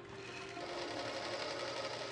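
Industrial sewing machines running steadily on a garment-factory floor, a continuous machine whirr with no breaks.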